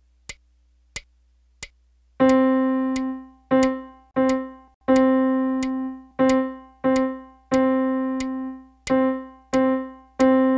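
Four short clicks count in evenly. Then middle C on a piano is struck again and again in a half-quarter-quarter rhythm, one held note and two shorter ones, repeated about three times.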